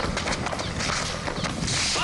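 Quick, irregular footsteps of people running on pavement, with two short hissing bursts of water spray from a Super Soaker water gun, about a second in and near the end.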